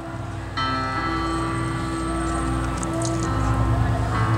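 Music through an outdoor public-address system: a sustained chord starts suddenly about half a second in and holds, over a steady low hum.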